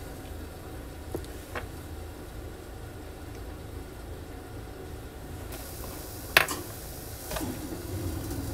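A few light metal clicks and taps as a punch-and-die set and thin shim stock are handled and lined up, with one sharper click about six seconds in, over a steady low hum.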